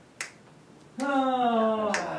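Finger snaps, one a fraction of a second in and another near the end. From about a second in, a man's voice holds one long tone that falls slightly in pitch.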